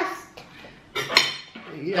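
Table knife spreading butter on a slice of bread, with a sharp clink of the knife just over a second in.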